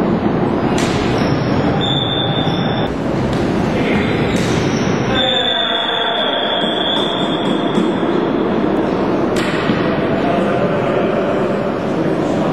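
Floorball game noise: a steady wash of voices and court noise, broken by sharp knocks about a second in, near the middle and toward the end. A high steady tone sounds briefly about two seconds in and is held for about three seconds from near the middle.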